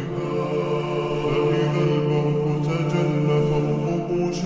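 Arabic nasheed chant sung in long, held notes, slowed down and drenched in reverb, with boosted bass.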